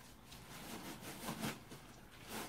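Faint handling noises from a plastic embroidery punch-needle pen being fiddled with by hand, with a brief soft vocal sound about a second and a half in.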